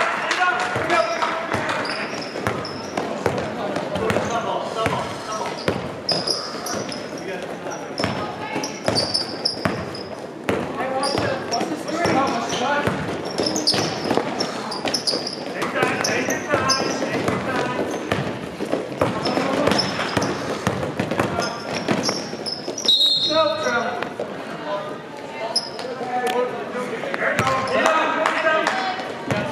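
Sounds of a basketball game in a gym: a ball dribbling on the court with repeated short knocks, shoes squeaking, and players and onlookers calling out, all echoing in the hall.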